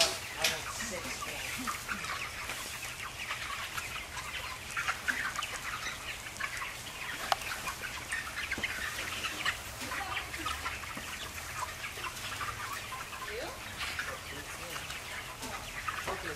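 A large flock of Cobb 500 broiler chickens calling: a dense chatter of short chirps and clucks over a steady low hum.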